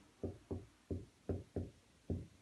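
Marker tip knocking against a whiteboard while a word is handwritten: about five short, soft knocks at an uneven pace.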